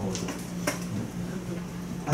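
Lecture-room tone in a pause of amplified speech: a steady low hum with faint murmuring, and one sharp click about two-thirds of a second in.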